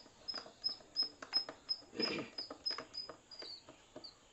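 A hand screwdriver working the terminal screws of a main switch: irregular small clicks and knocks of the tip in the screw heads, with a longer scrape about two seconds in. Behind it, a short high chirp repeats about three times a second and stops near the end.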